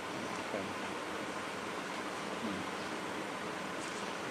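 Steady hiss of background noise with no distinct event.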